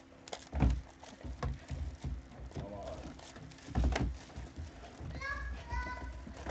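Trading card packs being opened and handled: short crinkles and clicks of wrappers and cards, with several sharp knocks on the wooden table, the loudest about half a second in and about four seconds in.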